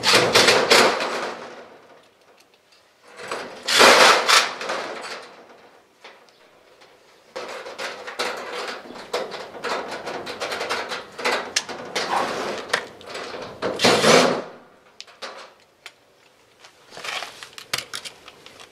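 Steel double doors and a metal hasp clanking and rattling in irregular bursts as the hasp is swung and the doors are worked shut; the loudest bursts come near the start, about four seconds in and about fourteen seconds in.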